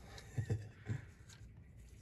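A man laughing briefly: three quick chuckles in the first second, then only a faint low hum.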